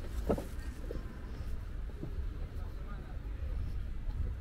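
Outdoor ambience: a steady low rumble with a few short snatches of nearby voices in the first half.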